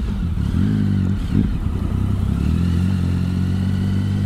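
2008 Triumph Speed Triple's 1050 cc three-cylinder engine running under way at a steady low cruise; the engine note wavers briefly about a second in, then holds steady.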